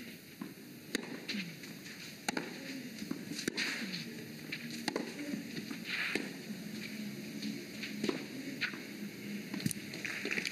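Tennis rally on a clay court: a string of sharp racket-on-ball hits, about one every second and a half, trading back and forth between the two players.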